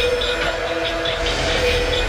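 Electronic music: a steady held, horn-like synth chord over deep bass, with a light regular ticking high above.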